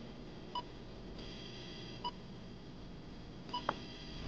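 Hospital patient monitor beeping steadily: three short beeps about a second and a half apart, with a soft click near the end.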